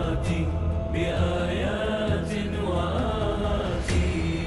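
Chanted Shia lament (nadba): a drawn-out, wordless sung melody over a steady low vocal drone, between sung verses.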